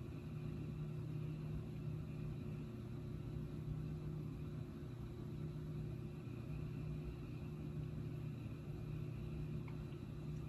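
Steady low background hum with faint hiss, even in level throughout; no pencil taps or other distinct events stand out.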